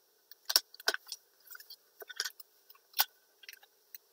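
Masking tape and floral wire being handled and pressed together by hand: a string of sharp crinkling clicks and rustles, with the strongest about half a second, one, two and three seconds in.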